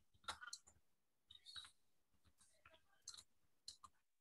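Faint, irregular computer keyboard keystrokes as a line of text is typed.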